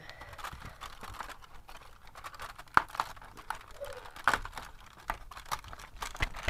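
Cardboard advent calendar being handled and opened: card and foil crinkling and rustling with scattered sharp crackles and clicks, the two loudest snaps about three seconds and four seconds in.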